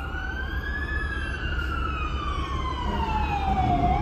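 Emergency vehicle siren on a slow wail. Its pitch tops out about a second in, slides down over the next three seconds, and starts climbing again at the end. A low rumble runs underneath.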